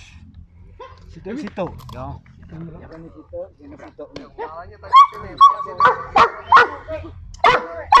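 Young Dobermann barking: a run of about six sharp, loud barks in the second half, after quieter voice-like sounds.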